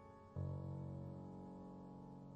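Soft instrumental background music: a low, held chord comes in suddenly about half a second in and slowly fades.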